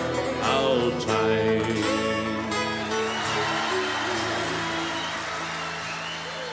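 Live Irish folk band of acoustic guitars, fiddle and banjo playing the closing bars of a ballad: a few last strums, then a final chord held and slowly fading.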